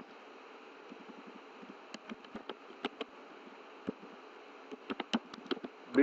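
Computer keyboard keys clicking in irregular bursts of typing, busiest about two seconds in and again toward the end, over a steady background hiss.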